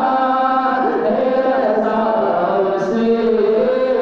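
Two men singing a naat, an Islamic devotional song, into handheld microphones, with long held notes that slide from pitch to pitch.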